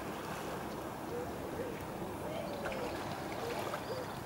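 Steady outdoor sea ambience: a continuous wash of gentle water and wind. A few faint, short pitched calls rise and fall now and then above it.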